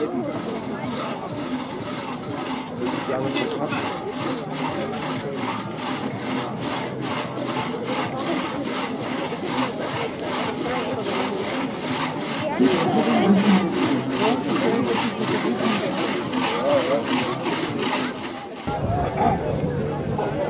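Two-man crosscut saws being pulled back and forth through logs by hand, a steady rasping rhythm of about three strokes a second that stops shortly before the end.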